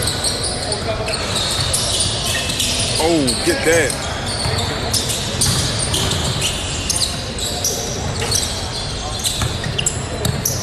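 Basketballs bouncing on a court in frequent sharp knocks throughout, with a player's shout about three seconds in.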